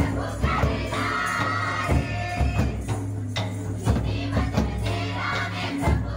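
Folk dance song with group singing over drum beats and a steady deep bass, played for a line dance.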